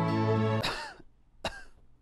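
Soft instrumental music stops abruptly about half a second in and a person coughs loudly, then gives a second, shorter cough about a second later.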